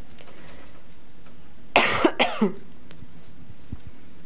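A person coughing: a quick run of three or four coughs about two seconds in, over steady room hiss.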